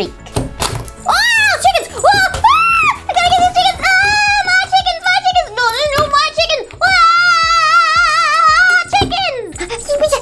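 A high-pitched voice singing wordless, wavering 'ah' sounds that swoop up and down, ending in one long held note, over background music.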